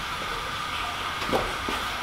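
Steady background hiss with a low hum underneath, and a brief faint sound about two-thirds of the way in.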